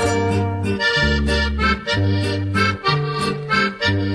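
Instrumental break in a Colombian guasca (carrilera) song between sung lines: a melody over a bass line that changes note about every half second, with a steady beat.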